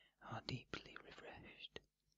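A man's soft, close-up whisper with no words that can be made out, lasting about a second and a half.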